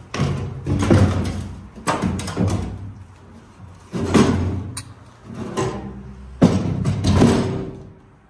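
A sheet-steel switchgear breaker door being handled on a concrete floor, clanking and scraping in about six irregular bursts, each with a ringing metallic resonance.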